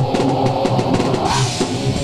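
A rock band playing live: a drum kit with cymbals over electric guitar in a heavy rock song, with a cymbal crash about one and a half seconds in.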